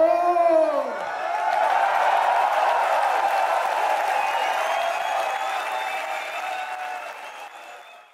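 Concert audience applauding and cheering, with one shout that falls in pitch right at the start; the applause fades out near the end.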